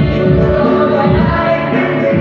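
Live amplified band music: several voices singing together into microphones over a keyboard accompaniment, with a low beat pulsing a few times a second, heard through the stage PA.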